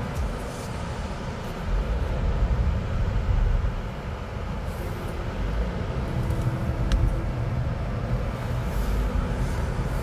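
Steady low rumble of road and engine noise inside the cabin of a 2023 Jeep Grand Cherokee with a 2-litre engine, cruising on the highway.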